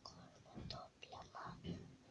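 A child whispering a few faint words.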